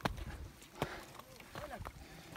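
Footsteps on a stony dirt path: two firm steps a little under a second apart, then lighter scuffs, with voices in the background.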